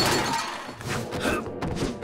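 Cartoon action soundtrack: music under a sudden loud, noisy crash-like burst that fades, followed by a few sharp thuds and knocks.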